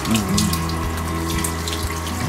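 Water running steadily from a handheld shower hose, spraying onto a dog's wet head and ears as it is rinsed in a grooming tub.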